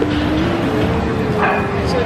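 Busy restaurant dining room: a steady wash of crowd chatter and clatter, with one long drawn-out note rising slightly through it.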